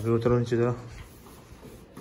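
A man's voice for under a second, then faint rustling of clothing and movement as a barefoot man climbs down from an examination couch toward a steel step stool, with a light knock near the end.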